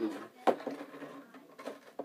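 A single sharp click about half a second in, then faint handling noise and small clicks as a computer mouse and its cable are lifted out of its cardboard box and plastic packaging tray.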